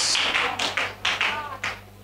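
Hand clapping from a small congregation, irregular and thinning out until it stops near the end, over a steady low hum.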